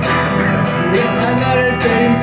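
Live band music: a strummed acoustic guitar with keyboard and electric guitar playing a slow song.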